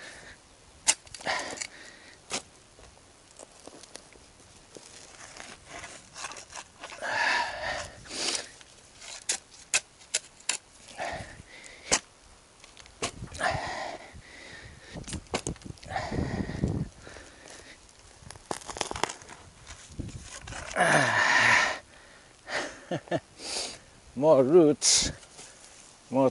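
Steel shovel digging into hard, root-filled soil: irregular short clinks and knocks as the blade strikes earth and stones, and several scraping sounds about a second long as it is pushed in and levered out.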